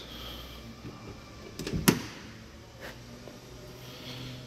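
Driver's door of a 1966 Jaguar Mark II being opened, with one sharp click about two seconds in and a fainter one about a second later.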